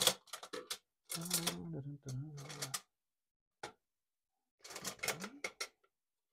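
Paintbrushes clicking and rattling against each other as they are sorted through to pick one out: a few light clicks early on, one lone click near the middle, and a busier run of clicks near the end.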